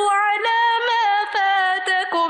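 A woman's voice chanting Quranic Arabic recitation in long, melodic held notes, with brief breaks for breath.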